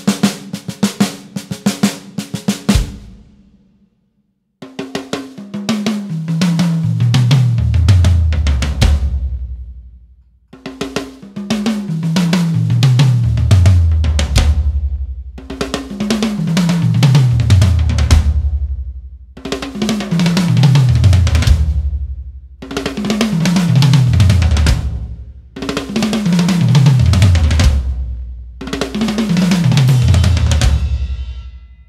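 Drum kit played live: a fast fill down the toms, from the small concert toms to the big low drums, so the strokes step down in pitch from high to low, with cymbals on top. The fill is played again and again, roughly every four seconds, with short breaks between runs.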